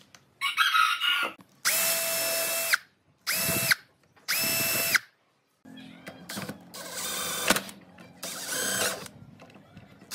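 Cordless drill boring pilot holes through the screw holes of small brass hinges into the edge of a wooden board. The motor runs in three short bursts of about a second each at a steady whine, starting and stopping sharply. From about halfway it gives quieter, uneven bursts as small screws are set into the hinges.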